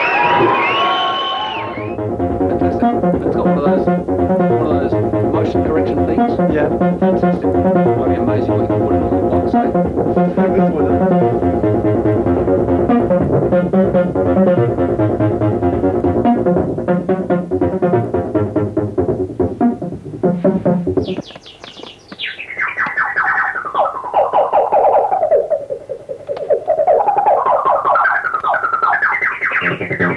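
Electronic dance music with a steady repeating beat and bassline. About two-thirds of the way through it drops out, and a lone synthesizer tone sweeps smoothly down in pitch and back up as a knob is turned.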